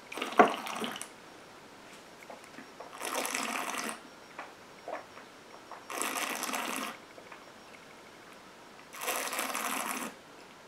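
A tasting glass knocks sharply on the table about half a second in. Then come three hissing, slurping breaths through pursed lips, each about a second long and three seconds apart, as a mouthful of gin is tasted.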